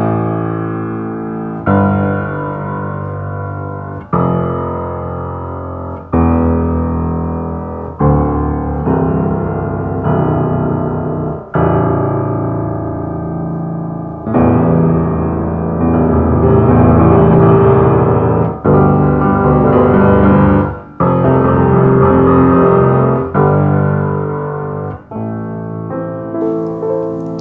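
A 1966 Baldwin SF10 seven-foot concert grand piano played in full chords reaching deep into the bass, a new chord struck about every two seconds and left to ring and die away.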